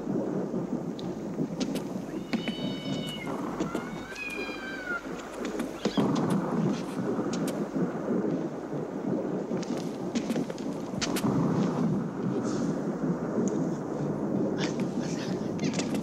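A cat meows twice a few seconds in, over a constant low rumbling noise that gets louder about six seconds in, with scattered knocks.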